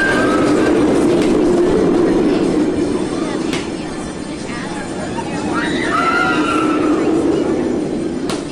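Tempesto steel roller coaster train running along its track with a steady rumble that swells, fades slightly and swells again as it passes. Riders scream near the start and again about six seconds in.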